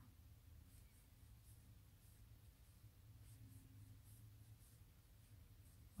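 Near silence: a faint low room hum with soft, scattered scratching ticks of a crochet hook drawing yarn through stitches.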